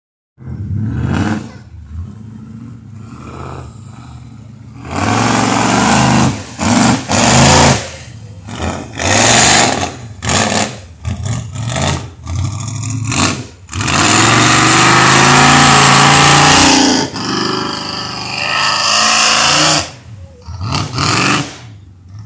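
Jeep engine revving hard in repeated surges, rising and falling, as it spins its mud tires through a mud pit. It holds one long full-throttle run about two-thirds of the way through.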